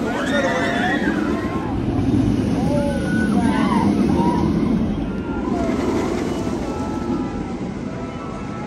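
Riders screaming on the Jurassic World VelociCoaster, many overlapping rising and falling cries over the rumble of the steel coaster train running along the track; the screams thin out after about five seconds.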